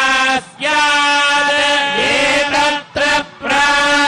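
A male priest chanting Hindu mantras through a microphone in long held notes, pausing briefly for breath about half a second in and again about three seconds in.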